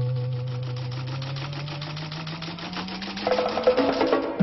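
Electronic TV news opening theme: a held synthesizer chord slowly rising in pitch over a fast, even ticking pulse, with percussive hits coming in near the end.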